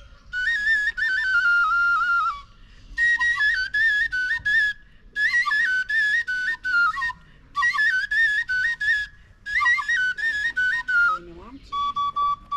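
Tütək, the Azerbaijani wooden shepherd's pipe, played solo: a high, ornamented folk melody with quick grace notes, in short phrases broken by brief pauses for breath.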